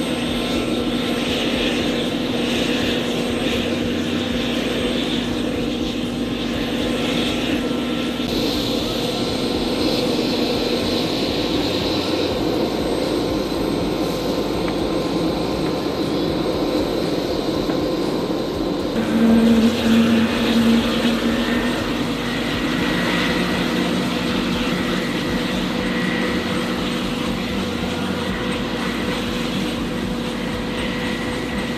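Steady turbine whine of an HH-60G Pave Hawk helicopter running on the ground during start-up, with its rotors beginning to turn. About two-thirds of the way through, a louder low tone sounds for a couple of seconds.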